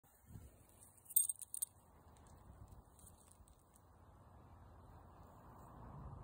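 A short metallic jingle, a few quick clinks about a second in, over a steady faint low background noise.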